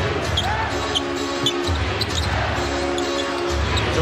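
A basketball being dribbled on a hardwood court, with short sneaker squeaks, under arena music over the PA. The music is a repeating phrase of held notes over a throbbing bass, with crowd noise throughout.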